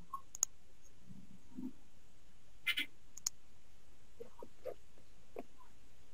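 A few short, sharp computer mouse clicks, spread through a quiet stretch, as menu items are clicked in Word.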